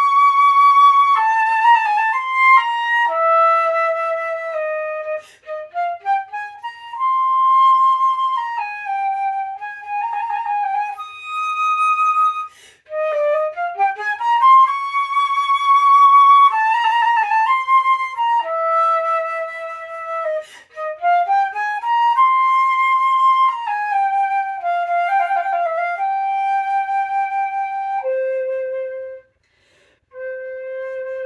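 Solo concert flute playing a slow, lyrical etude: held notes reached by quick rising runs of grace notes, in phrases separated by short breaks. The opening phrase returns about halfway through.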